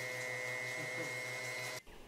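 An electric machine running steadily indoors: a hum with a pulsing low buzz and a high steady whine, which cuts off suddenly near the end.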